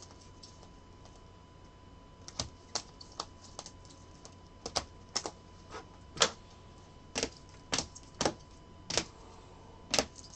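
Clear hard plastic trading-card holders clicking and tapping against each other and the tabletop as a stack of cased cards is handled and sorted. Irregular sharp clicks begin about two seconds in.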